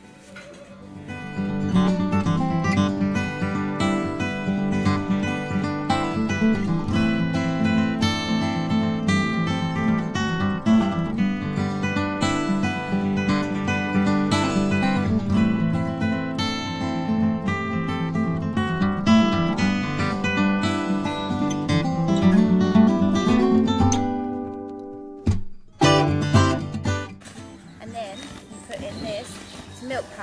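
Background music led by a strummed acoustic guitar, which stops abruptly about three-quarters of the way through. Quieter sounds follow to the end.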